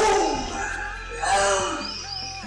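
A man's voice, heard twice with pitch gliding up and down, the second time about a second and a half in.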